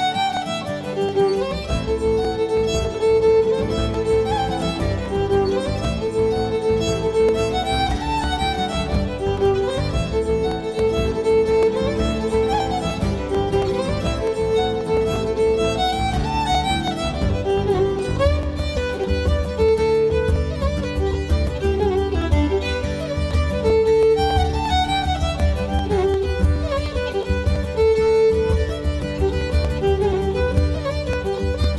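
Violin playing a melody over a recorded instrumental backing track; a heavier bass line comes in about halfway through.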